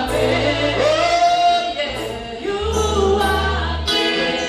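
Gospel choir singing with band accompaniment, a held bass note underneath that drops lower about two and a half seconds in.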